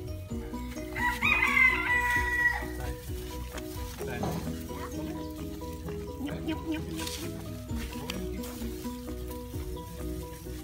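A rooster crows once, about a second in: one long call that rises and then holds before dropping away, over background music with a steady repeating melody.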